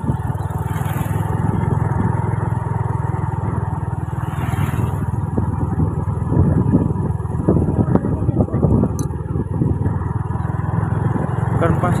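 Motorcycle engine running steadily at cruising speed, with road and wind noise.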